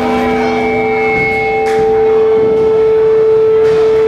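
Amplifier feedback from a band's stage rig: a single steady, high whistling tone at one fixed pitch, growing somewhat louder about halfway through. A few fainter steady tones die away in the first second or two.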